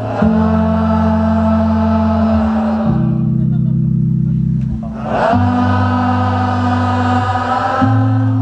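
A crowd singing one long held note together over the band's sustained bass and keyboard chords. The voices drop away for about two seconds midway, leaving the low chord, then come back in.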